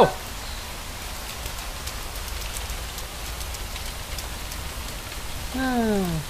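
Steady rain falling, an even hiss with scattered faint drop ticks.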